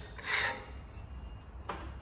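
Aluminium strip sliding across the steel bed of a metal guillotine: one short rub about half a second in, then only faint low background noise.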